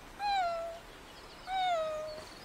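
Puppy whining twice, each a short high whine that falls in pitch: begging for the fish it is being denied.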